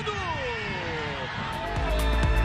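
Football TV commentator's long, held goal cry, falling in pitch over about a second and a half. Electronic music with a steady beat cuts in near the end.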